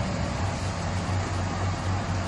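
Steady low hum with an even hiss of outdoor background noise, with nothing sudden in it.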